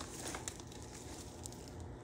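Faint, sparse crackling of a wood fire burning in an open fireplace, with the light rustle of dry herb twigs being handled.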